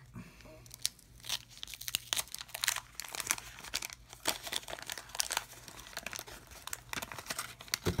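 Old waxed-paper wrapper of a 1990 Topps football card pack being torn and peeled open by hand, a continuous run of crinkles and small rips.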